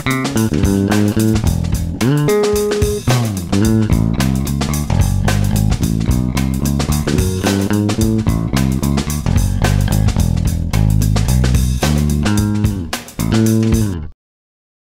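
Fingerstyle electric bass line, the fingertips' attack on the strings clearly heard, playing a groove over a drum loop. It cuts off abruptly at the end.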